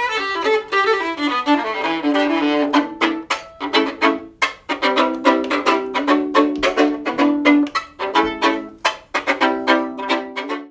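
Violin bowed with a Fiddlerman Forever bow strung with Zarelon synthetic hair. It plays a quick run of notes, then from about three seconds in a string of short, sharp, detached strokes with brief gaps between them.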